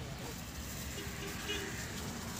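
Steady background rumble and hiss, with faint snatches of a voice at about one and one-and-a-half seconds in.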